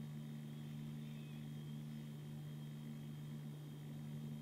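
Quiet room tone: a faint, steady low hum with light hiss.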